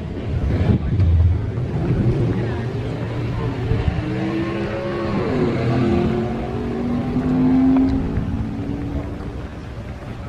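Hot rod engines running and being revved as the cars pull away, the pitch rising and falling with the throttle.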